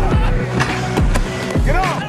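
Background music with a steady beat: a heavy kick drum a little under twice a second over a bass line, with a pitched lead that bends up and down.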